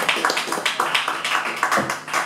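Fast, even percussive taps, about six or seven a second, from the drummer's sticks on the drum kit, with no guitars or bass playing; the taps thin out near the end.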